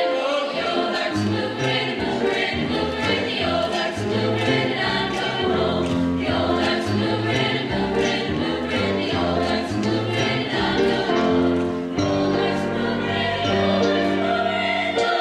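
Mixed high-school choir singing in harmony, boys' and girls' voices together, with held notes that change every second or so.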